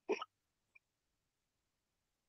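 Mostly near silence, with one short vocal sound from a person, like a catch of breath, right at the start.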